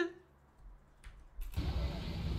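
Near silence with a couple of faint clicks, then about one and a half seconds in a busy street din with a low motorbike engine rumble starts suddenly.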